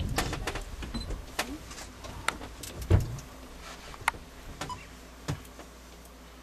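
Camcorder handling and zoom noise: scattered clicks and knocks, the loudest a thump about three seconds in, over a low rumble that fades in the first second or two.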